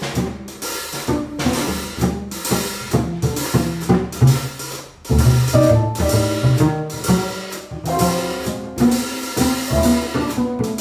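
Jazz piano trio playing live: acoustic piano, plucked upright double bass and a drum kit, with the drums to the fore and frequent snare and cymbal strokes over a walking bass line.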